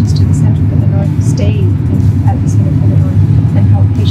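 A woman speaking over a loud, steady low rumble.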